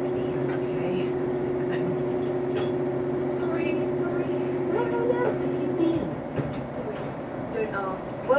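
A steady low drone, made of several level tones, under faint background voices; the drone stops with a short falling note about six seconds in.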